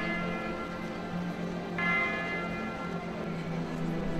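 A bell ringing: a stroke is already sounding at the start and a second one is struck a little under two seconds in, each ringing out and fading, over a steady low drone.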